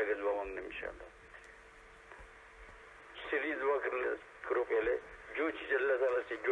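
A man speaking Urdu, giving a talk, with a pause of about two seconds after the first second before he speaks again.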